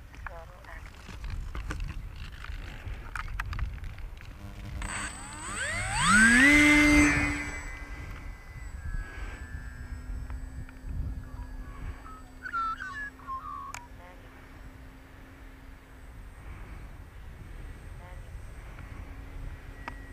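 Electric motor and propeller of a small foam RC plane throttling up for a hand launch. A whine rises quickly in pitch about five seconds in and holds loudest for a couple of seconds, then settles to a quieter, steady drone as the plane flies off.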